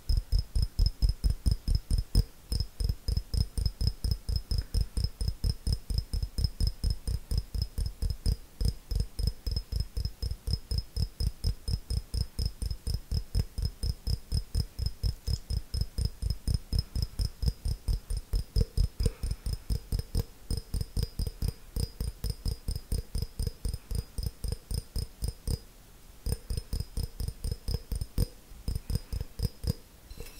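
Fingers tapping quickly and steadily on an empty clear glass jar held right at the microphone, about three taps a second. Each tap is a dull close knock with a short high ring of glass, and the tapping breaks off briefly a few times.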